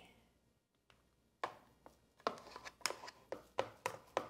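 A spatula scraping and knocking against the inside of a plastic food processor bowl while mixture is scooped out: irregular sharp knocks, two or three a second, starting about a second and a half in.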